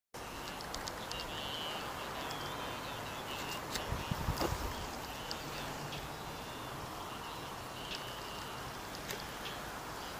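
Outdoor ambience: a steady background hiss with faint, scattered bird chirps, and a brief low rumble on the microphone about four seconds in.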